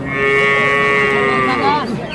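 A calf's single long, high moo, held at a steady pitch for over a second, then falling and breaking off near the end.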